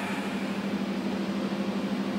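A steady low hum with an even hiss behind it: the background noise of the hall and its sound system, with no one speaking.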